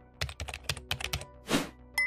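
Computer keyboard typing sound effect: a quick run of key clicks, then a short swish about a second and a half in, over soft background music.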